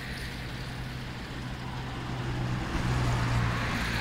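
Steady distant road-traffic noise with a low hum, slowly getting louder toward the end.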